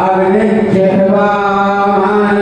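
Devotional chanting by voice in long, steadily held notes.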